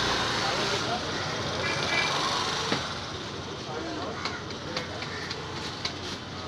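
Steady busy-street noise with background voices. In the second half come several light slaps as a round of roti dough is patted between the palms.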